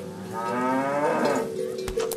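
A cow mooing once: a single call of about a second, its pitch rising and then dropping away at the end.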